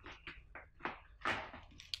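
A few short knocks, clicks and rustles from handling a plastic wired winch hand controller and its heavy cables, the clearest about a second in and a sharp click near the end.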